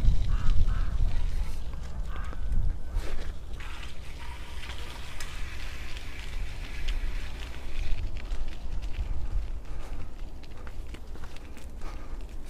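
Low, uneven rumble of a bicycle riding slowly over a rough dirt path, with a few faint bird calls in the first few seconds.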